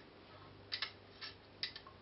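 A handful of light clicks, some in quick pairs, as a metal Telecaster bridge plate is handled and shifted against the wooden guitar body while being lined up.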